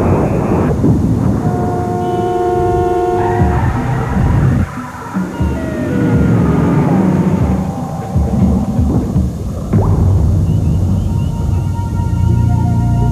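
Soft-drink TV commercial soundtrack: music mixed with loud, busy sound effects. A chord of several steady held notes comes in about one and a half seconds in and lasts about two seconds.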